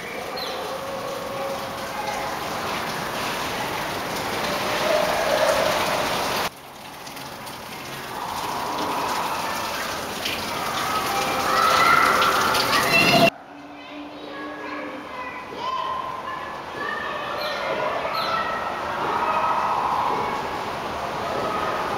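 Indoor hall ambience: a steady hiss with distant, unclear voices of people, broken by two abrupt cuts, about six and a half and thirteen seconds in.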